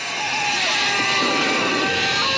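Horror-film soundtrack: a dense, steady wash of music and effects with a few short gliding tones.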